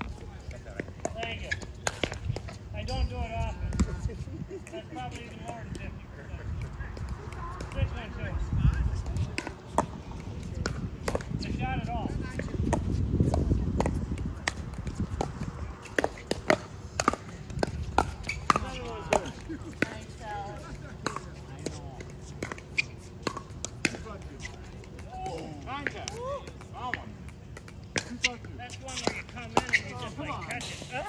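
Pickleball paddles hitting a plastic ball in rallies: sharp pops at irregular intervals, at times several in quick succession, with voices in the background.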